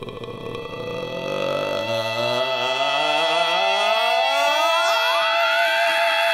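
Electronic riser sound effect: a held synth tone with steady high notes, joined about two seconds in by a layered tone that glides steadily upward in pitch and levels off near the end.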